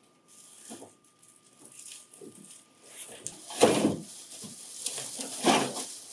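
Cardboard box and plastic wrapping handled as a bagged printer finisher is slid out of its upright box: rustling and scraping, with two louder scrapes about three and a half and five and a half seconds in.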